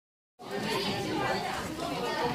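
Indistinct chatter of many voices talking at once, starting abruptly about half a second in.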